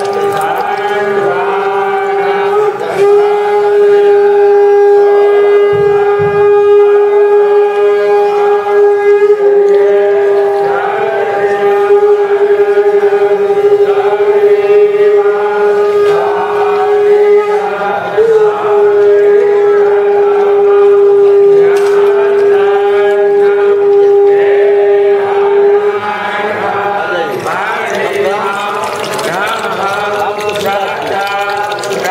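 Conch shell (shankh) blown in long, steady held notes for worship, with a brief break about three seconds in and another about two-thirds of the way through, stopping a few seconds before the end. Voices chant underneath.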